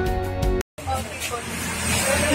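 Background music with plucked notes that cuts off suddenly just over half a second in; after a brief silent gap comes the murmur of a busy shop, with voices beginning near the end.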